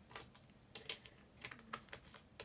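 Handling noise: a few faint, irregular clicks and light taps.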